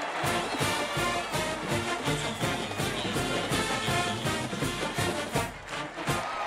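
Brass band music with a steady drum beat.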